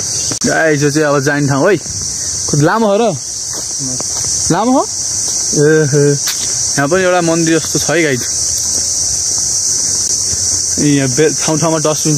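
A steady, high-pitched drone of forest insects, with a man's voice coming in short bursts over it.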